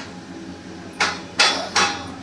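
Doppelmayr detachable six-seat chairlift running through its station: three sharp metallic knocks in quick succession about a second in, each with a brief metallic ring, over the steady running noise of the lift.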